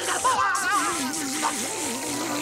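Cartoon sound effect of liquid being sucked from a pitcher up a long tube: a wobbling, warbling gurgle over steady background music.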